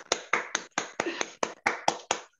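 Hand claps in applause, heard over a video call: a quick, even run of about five claps a second.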